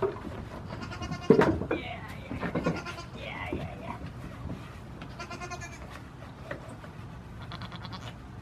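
Goats bleating several times, the loudest call about a second in, with scattered knocks on the wooden shed floor.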